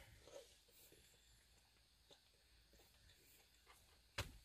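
Near silence: room tone, with a few faint soft sounds in the first half second.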